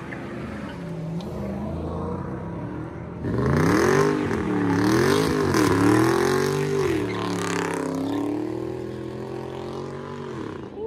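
Dodge Charger's engine revving hard while doing donuts, its tires spinning and smoking: from about three seconds in the revs swing up and down several times, loud, over a hiss of tire noise, then ease to a lower, steadier pitch near the end.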